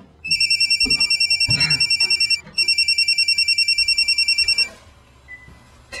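Telephone ringing: two trilling rings of about two seconds each, with a brief break between them.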